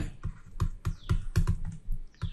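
A stylus tapping on a pen tablet while handwriting, heard as a quick, irregular series of small clicks.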